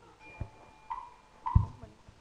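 A few short, light hollow knocks, each with a brief ringing tone: one about a second in and another half a second later. There are duller low thumps among them, the loudest coming with the second knock.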